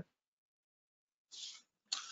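Silence, then a short, faint breath in from a man about a second and a half in, just before he starts to speak.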